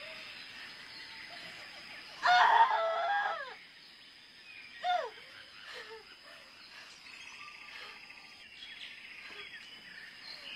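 A rooster crowing once, about two seconds in, loud over a steady high background hiss of forest ambience.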